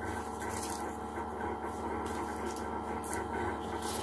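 Faint rustling and light tapping of paper being handled on a tabletop, with a few short clicks near the end, over a steady low hum.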